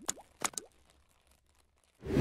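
Two short pops of an animated-logo sound effect, about half a second apart, each followed by a brief rising pitch slide.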